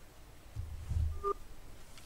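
Open telephone line with no one speaking: a faint low rumble, then a short electronic beep a little past the middle.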